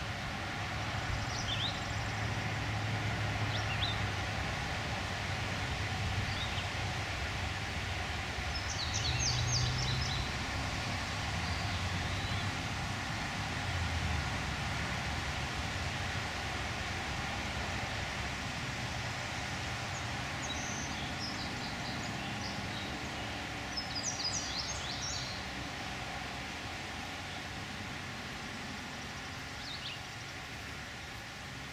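Steady outdoor background noise with a low hum through the first half. Short clusters of high bird chirps come twice, about nine and about twenty-four seconds in.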